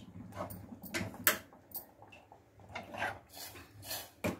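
Steel pot lid and ladle handled on a stovetop, giving a string of short metallic knocks and scrapes.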